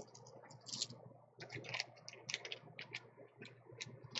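Faint, irregular light clicks and clacks of plastic nail polish swatch sticks being handled and knocked together, growing busier about a second and a half in.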